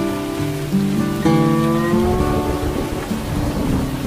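Steady rain with soft guitar music over it: a chord sounds about a second in and fades, and in the second half a low rumble of thunder takes over under the rain.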